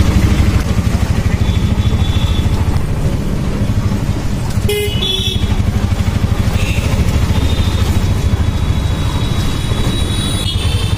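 Auto-rickshaw engine running steadily with a fast low pulsing, heard from inside the open cabin. Vehicle horns in the surrounding traffic toot briefly several times.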